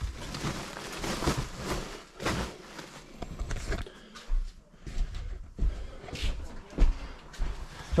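Irregular thuds and rustling as bulky sacks of used clothing are shifted and set down upright.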